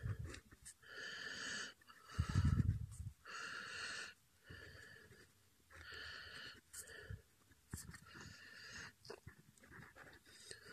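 Soft, wheezy breathing close to the microphone, a run of short breaths in and out about every second. Two low thumps, near the start and about two and a half seconds in.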